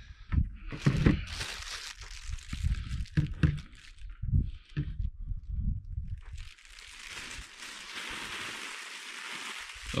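Handling noise of a leather machete sheath and the machete being moved about and laid down on a plastic folding table: irregular knocks, taps and rustles. A steady hiss takes over for the last three seconds or so.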